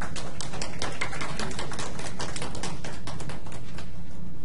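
Scattered clapping from a few people in the room: quick, irregular claps that thin out near the end, over a steady low hum.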